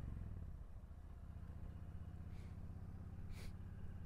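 Yamaha V-Star 1300's V-twin engine running at low, steady revs, its pitch dipping slightly about half a second in. Two brief hisses come near the middle and near the end.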